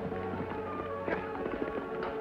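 Dramatic orchestral score with the irregular clatter of galloping horses' hoofbeats laid over it, the hoofbeats densest around the middle.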